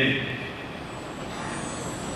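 A man's amplified voice finishes a word right at the start, then steady background noise with no voice for the rest of the time.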